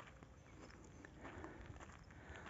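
Near silence with faint footsteps on dry, stony dirt ground.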